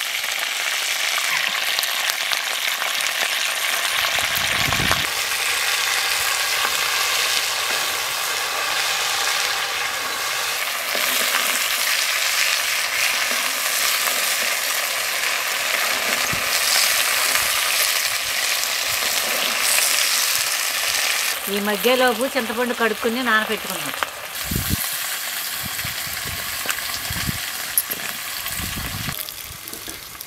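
Nalleru (veld grape) stems sizzling in a hot clay pot, with a steady frying hiss as they are stirred with a wooden spatula. A brief voice is heard about two-thirds of the way in.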